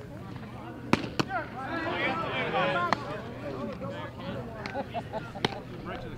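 A sharp crack about a second in as a pitched baseball reaches home plate, with a second, softer crack just after. Spectators then shout and call out together for a couple of seconds, and another single crack comes near the end.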